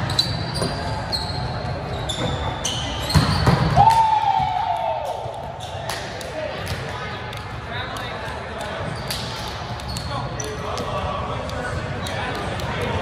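Indoor volleyball rally on a hardwood court: sharp hits of the ball and short sneaker squeaks, with players calling out. Around three seconds in come a few loud hits, then one long shout that falls in pitch as the point ends, followed by chatter in the hall.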